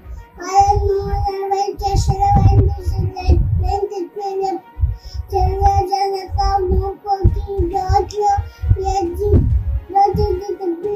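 A young girl's voice rapidly naming traffic signs one after another in a sing-song chant, the words coming in short bursts with brief pauses between signs.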